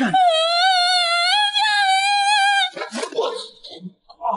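A woman's long, high-pitched scream, held steady with a slight waver for nearly three seconds. It is followed by a brief scuffle of knocks and rustling.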